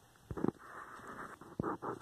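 Hands scratching and pressing loose potting soil in a plastic bucket, firming it around a newly planted stem: a run of rustling and scraping with a few soft knocks, starting about a third of a second in.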